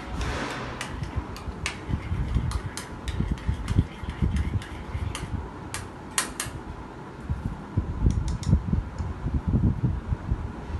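Scattered sharp clicks and taps of kitchen utensils on dishes, over a steady fan-like hum, with a brief hiss in the first second.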